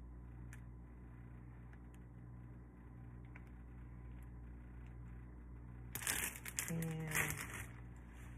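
Low steady hum with a few faint ticks, then about six seconds in, loud crinkling of a clear plastic bag of foil balloons being handled.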